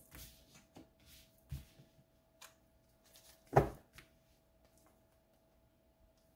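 Tarot cards being handled at a table: a few faint soft rustles and taps, then one louder dull thump about three and a half seconds in, over a faint steady hum.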